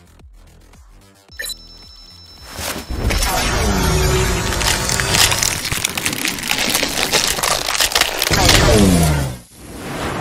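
Cinematic transformation sound design: quiet rhythmic electronic beats, then a sudden high steady tone as the alien watch is activated about a second and a half in. From about two and a half seconds a loud, dense layer of crackling energy effects and music takes over, with two falling, growl-like sweeps, one near the middle and one near the end, as the boy turns into a beast.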